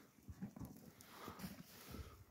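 Very faint sounds of horses shifting close by: a few soft, low knocks against near silence.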